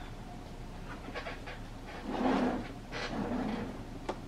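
Two short breathy exhalations, the first a little louder, after a few faint rustles of cotton fabric being folded in the hands.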